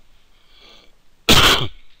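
A man coughs once, a single sharp burst about a second and a half in, after a short intake of breath.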